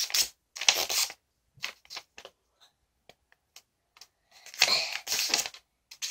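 A sheet of origami paper being handled and folded, rustling and crinkling in short bursts, with a louder, longer stretch of rustling near the end.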